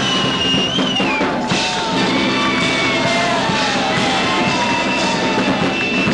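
Small live rock band playing a song, with a drum kit and guitar prominent and long held, bending notes over the beat.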